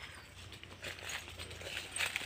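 Faint rustling with scattered light clicks and taps.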